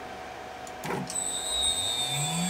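A click about a second in, then a steady high-pitched electrical whine as the CNC router's motor drives (spindle inverter and stepper drivers) power up at program start, with a low hum coming in just before the end.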